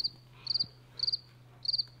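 Cricket chirping at an even pace, about two chirps a second, each chirp a quick trill of three or four pulses, used as the comic 'crickets' sound effect for an unanswered question.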